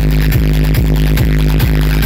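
Loud electronic DJ music played through a large outdoor speaker stack: a heavy kick drum about two and a half beats a second over deep, steady bass.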